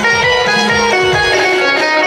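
Live folk band playing an instrumental passage: a bright plucked-string-like melody over hand drums whose low strokes fall in pitch.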